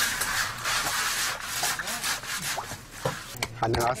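Coarse scraping and rustling as hands dig through a woven sack of loose material, loudest in the first second and a half. A few sharp knocks follow toward the end.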